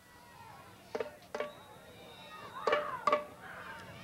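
Field sound of an outdoor soccer match under the commentary: low crowd and field noise broken by a few sharp knocks and players' shouts, busiest near the end.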